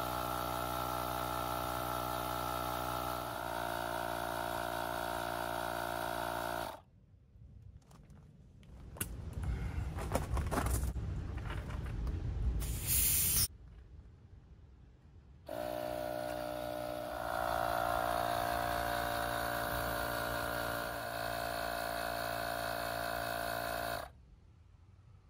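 AstroAI 20V cordless tire inflator's compressor running steadily with a buzzing motor hum as it pumps a trailer tire from 40 toward 50 PSI. The hum drops out for several seconds in the middle, leaving a quieter stretch with a brief hiss. It then comes back and cuts off at the end as the inflator reaches the set 50 PSI and shuts itself off.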